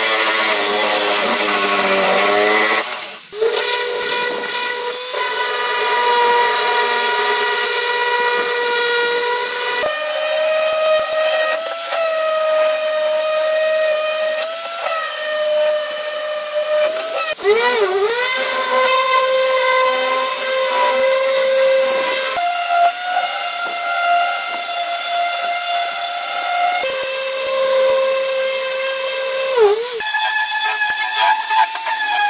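Electric random orbital sander running on a pine board, its dust port hosed to a shop vacuum: a loud steady whine whose pitch holds for a few seconds, then steps up or down, with brief sharp dips about halfway through and near the end.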